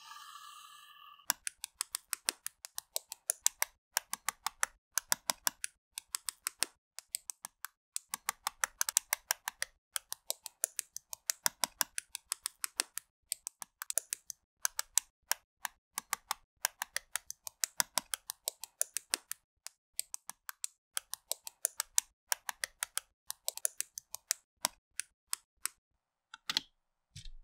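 Plastic LEGO bricks and Technic parts clicking and snapping together, a fast irregular run of sharp clicks, several a second, with short pauses.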